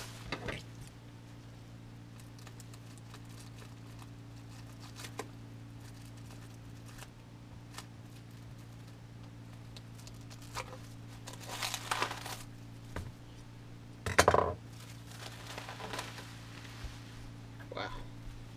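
Plastic wrapping rustling and crinkling in short spells as a heavy metal replica championship belt is unwrapped by hand, with a louder crinkle and thump about fourteen seconds in. A steady low hum runs underneath.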